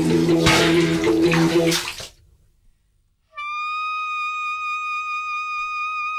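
Sound-collage music: bath water splashing over a held low reed drone, cutting off about two seconds in. After about a second of near silence, a high steady tone with a slight waver starts and holds.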